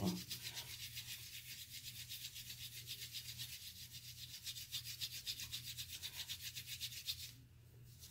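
Makeup brush bristles scrubbed rapidly back and forth over a textured brush-cleaning mat, a soft rhythmic scratching of several strokes a second that stops shortly before the end.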